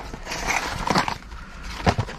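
A cardboard mailer box being opened and handled: papery rustling and scraping with a few light knocks as the flaps are pulled back and the card packet is lifted out.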